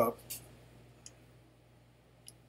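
Two light computer mouse clicks about a second apart, made while dragging and scaling an image in CAD software.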